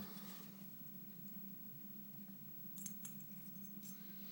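Faint clicks and light rattles of small survival-kit items (matches, pins, foil) being handled on a table with a metal tool, a few close together about three seconds in, over a low steady hum.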